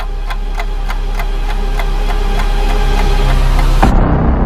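Edited sound-design build-up: sharp evenly spaced ticks, about three a second, over a low drone that swells steadily louder, breaking off just before the end into the start of a heavy boom.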